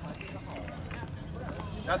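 Footsteps of several people walking on brick paving, with faint voices in the background.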